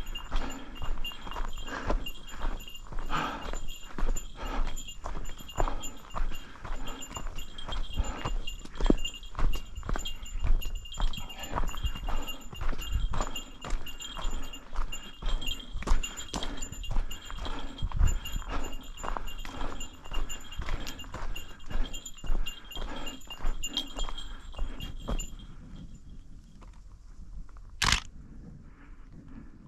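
Footsteps crunching along a gravel and dirt mountain trail, with a small bear bell jingling at every step. The walking and jingling stop a couple of seconds before the end, leaving a single click.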